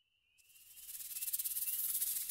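A shaker-like rattle fading in out of silence, a dense rapid high shaking that grows steadily louder over about a second, with a faint rising high tone at the very start.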